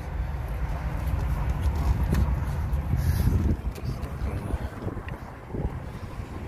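Low rumble and handling noise on a handheld camera's microphone as it is carried out of the car, with a few light knocks and clicks. The rumble eases a little past halfway.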